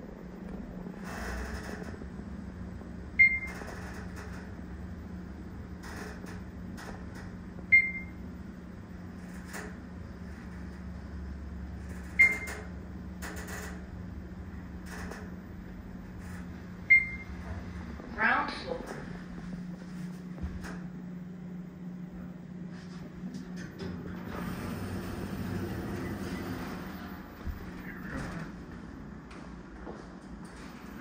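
Schindler 3300 machine-room-less traction elevator descending: a steady low hum of the car in motion, with four short high beeps about four and a half seconds apart, the floor-passing tones as it counts down the floors. Just after the last beep comes a brief gliding sound as the car arrives, and later a stretch of broader noise as the rider walks out.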